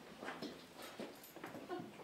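Faint room noise: scattered soft voices and small sounds of people moving, with no one speaking up.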